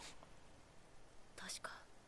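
Near silence, broken about one and a half seconds in by a brief, faint whisper.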